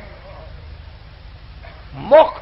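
Steady tape hiss with a low electrical hum underneath, the background noise of an old 1970 audio tape recording.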